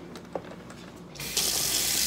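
Faint handling clicks, then a kitchen faucet is turned on a little over a second in and water runs steadily into the sink.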